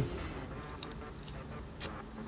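Two faint clicks about a second apart as a key is turned and pulled from the lock of a Volkswagen removable tow bar, over low hiss and a faint steady high whine.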